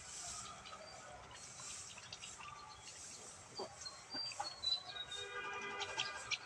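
Chickens clucking and small birds calling, with a falling whistled call about four seconds in, over the light rustle of dry rice straw being gathered by hand.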